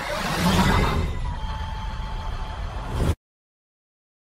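Outro sound effect: a whoosh with a low rumble that swells about half a second in, runs on with a faint steady tone, and cuts off suddenly about three seconds in.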